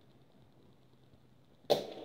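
Quiet room tone, then a single sharp knock near the end, like a hard small object striking the floor, followed at once by rattling and scraping.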